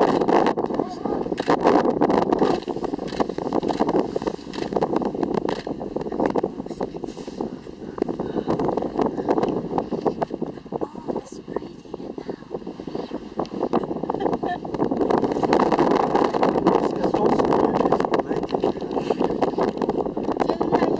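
Indistinct, muffled voices of people talking quietly over a steady low rumble, louder again in the last few seconds.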